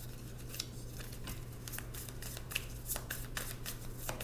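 A deck of tarot cards being shuffled by hand: a quick, irregular run of soft card flicks and slaps, over a steady low hum.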